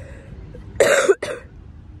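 A woman coughing into her hand, one short double cough about a second in.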